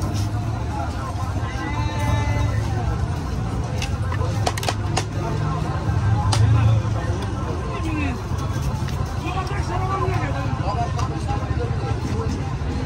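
Busy street ambience: people talking in the background over a steady low rumble of traffic, with a few sharp clinks of serving utensils and dishes about four to five seconds in.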